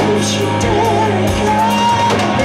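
Live rock band playing: electric guitar, electric bass and drum kit, with a singing voice over them.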